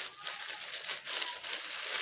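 Thin clear plastic wrapper crinkling irregularly as it is handled and turned in the hands.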